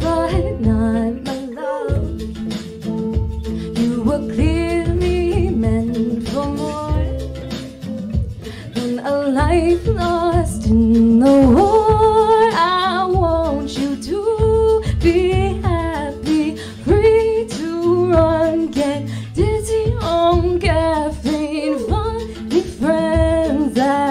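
A young woman singing a slow song with vibrato, accompanying herself on electric guitar chords, heard live through the hall's sound system.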